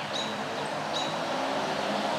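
Steady outdoor background noise with a low hum, broken by two brief high chirps about a second apart.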